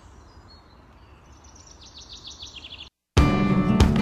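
A bird singing a rapid series of short, high chirps over quiet outdoor background noise, starting about a second in. The chirps cut off abruptly, and after a brief silence, loud guitar music starts near the end.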